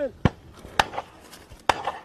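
Three sharp bangs in quick succession, each with a short ringing tail; the last is followed by a brief smear of echo.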